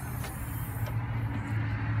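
A motor vehicle's engine giving a steady low hum that grows louder over the couple of seconds.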